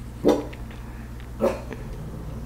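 A dog barks twice, two short barks a little over a second apart.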